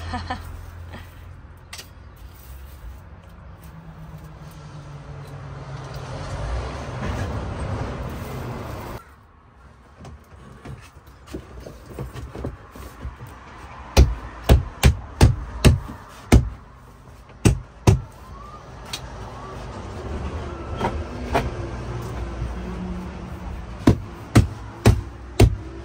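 Bathroom wall panel of a camper-van conversion being glued and fitted: a cartridge gun squeezes adhesive onto the panel, then there is a run of sharp knocks as the panel is handled and pressed into place. About eight quick knocks come in two seconds, followed by a few more spaced ones.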